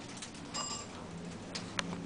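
Faint steady hum inside a Montgomery Vector hydraulic elevator car as it travels down, with a brief faint tone about half a second in and a small click near the end.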